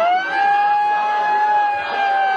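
A siren wailing over crowd noise: one long tone that sweeps up sharply at the start, then holds and slowly sinks.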